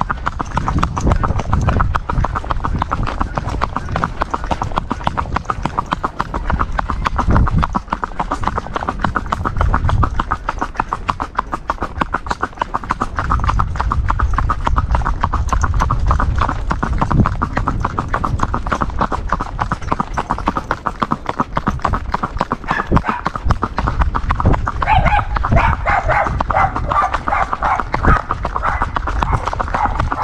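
A mare's hooves striking a paved road in a fast, even gait, making a rapid, continuous clip-clop with no pauses.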